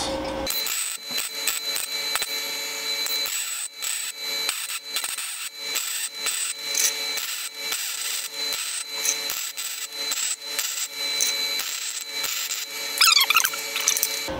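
MIG welding arc from a 250-amp inverter MIG welder crackling steadily as a bead fills in the open end of a one-inch steel tube, run at lowered voltage with a raised wire feed speed. It starts about half a second in and stops near the end.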